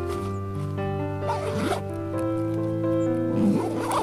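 Backpack zip being pulled open in two long strokes, about a second in and again near the end, over steady background music.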